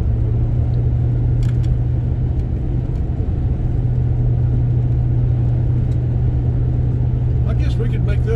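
Steady low drone of a car's engine and tyres heard from inside the cabin while cruising along a two-lane road, an even hum with no change in speed. A voice starts just before the end.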